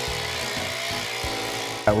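Powered earth auger running steadily as it bores a hole into soil, with background music underneath.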